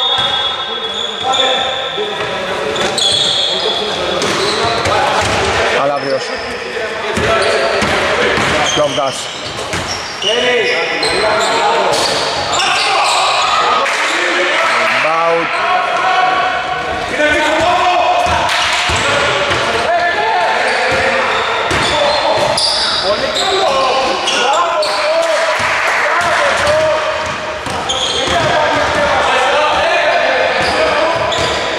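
A basketball being dribbled and bounced on an indoor court during live play, with voices calling out, all echoing in a large sports hall.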